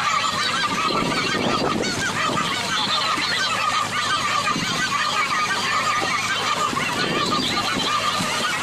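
Water churning and splashing as a dense catch of large fish thrashes in a purse seine net drawn against the boat's side, over a continuous chorus of many short high chirps.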